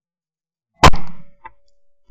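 A single 12-bore shot from a Davide Pedersoli La Bohemienne side-by-side hammer shotgun, heard from a camera mounted on the gun: one sharp, very loud report about a second in that dies away within half a second, followed by a faint click.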